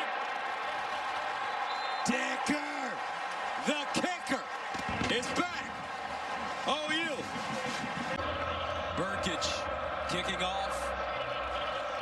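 Large stadium crowd cheering as a long field goal goes through, with single shouts rising and falling above the steady din, loudest about two to five seconds in.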